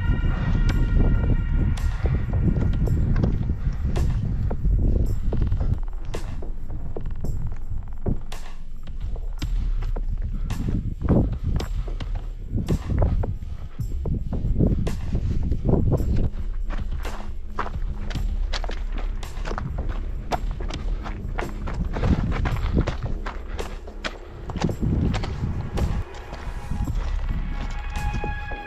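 Footsteps crunching and knocking on loose rock and scree, many short irregular impacts over a steady low rumble.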